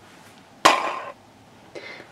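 Plastic Candy Land colour spinner flicked: a sudden start about half a second in, the arrow spinning and rattling for about half a second before it stops.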